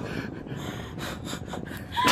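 A person's breathy, excited gasping, low over a steady background hiss.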